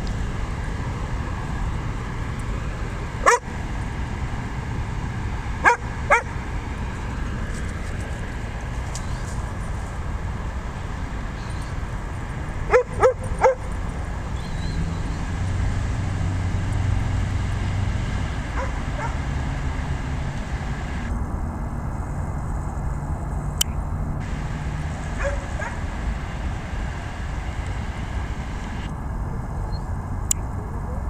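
Dog barking in short, sharp barks: one about three seconds in, two close together around six seconds, and a quick run of three around thirteen seconds, over a steady low background rumble.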